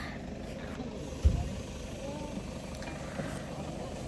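Steady low outdoor rumble with faint voices in the background, and a single low thump just over a second in.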